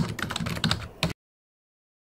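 Keyboard typing sound effect: a quick run of key clicks that cuts off abruptly about a second in.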